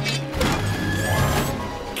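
Cartoon sound effects over background music as the pirate ship is set off by a lever: a sudden rushing crash about a third of a second in, then a rising sweep around the middle.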